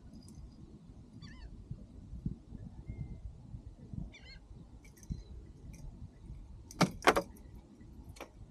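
Light metallic clinking and jangling of a fishing lure's hooks as they are worked out of a bluefish's mouth, with two loud sharp knocks close together near the end. A low wind rumble on the microphone runs underneath.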